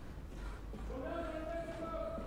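A person's voice holding one drawn-out sound for about a second and a half, its pitch rising slightly at the start, over a low steady hum.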